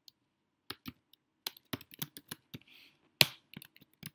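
Typing on a computer keyboard: irregular keystrokes as code is entered, with one noticeably louder key hit a little after three seconds in.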